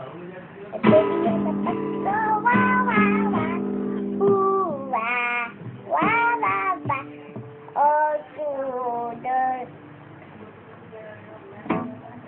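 An acoustic guitar is strummed about a second in, and its strings ring on for several seconds. It is struck again around six seconds. Over it, a young girl sings short wordless phrases that glide up and down.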